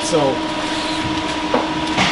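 Steady mechanical hum with a fixed pitch, with one light click about three-quarters of the way through.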